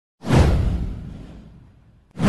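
A whoosh sound effect from an animated video intro: it comes in suddenly, sweeps down from a hiss into a low rumble, and fades away over about a second and a half.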